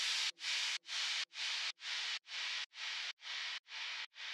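Closing bars of a Melbourne bounce dance track: only a hissing noise swell repeats, about two a second and cut off sharply each time, slowly fading out.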